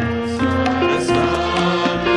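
Hindi devotional bhajan: a group of voices singing over sustained instrumental accompaniment, with a few drum strokes.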